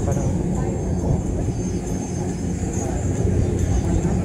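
Indistinct crowd chatter over a steady low rumble.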